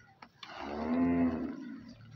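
A single moo from a cow: one long call of about a second and a half that rises and then falls in pitch.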